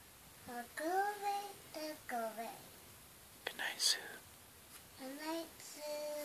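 A young child's soft, high-pitched voice making short sing-song sounds in several little phrases, with no clear words, and a breathy hiss about halfway through.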